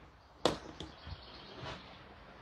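A small handheld craft iron set down on a table with one sharp tap, followed by faint rustling as fabric is handled.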